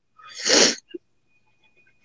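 A single sneeze: one short, sharp burst of breath that peaks about half a second in.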